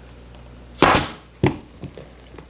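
Pneumatic upholstery staple gun firing twice into a vinyl-covered bench pad: a loud shot with a brief hiss of air about a second in, then a second, quieter shot about half a second later.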